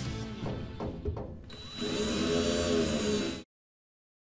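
A cordless drill whirring for about a second and a half over background music, after a few sharp clicks. Everything cuts off abruptly to silence about three and a half seconds in.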